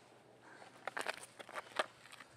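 A few sharp clicks and knocks, bunched together from about a second in, the loudest one near the end.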